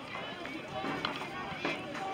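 Faint, indistinct voices of spectators talking in the stands, with no words standing out.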